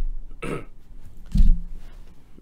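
Two short throat sounds from a person at the microphone: a sharp, noisy one about half a second in, and a deeper, louder low one about a second later, like a burp or cough.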